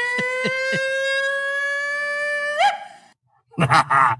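A long, held, horn-like note whose pitch climbs slowly and steadily, ending in a quick upward flick and cutting off about three seconds in. A few short, low, sliding sounds lie under it in the first second.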